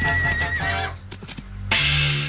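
A horse neighs, one wavering high call lasting under a second, followed by a few hoof clops, over a dramatic music score.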